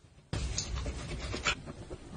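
Makeup brush scrubbed and swirled in soapy foam against the ridged silicone of a brush-cleaning bowl: wet swishing and squishing that starts suddenly about a third of a second in, with a sharper stroke near the end.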